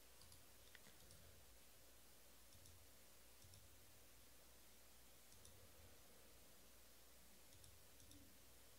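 Near silence: faint room hum with a few faint, scattered clicks.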